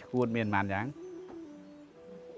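A man speaking for under a second, then soft background music holding long steady notes that change pitch in steps.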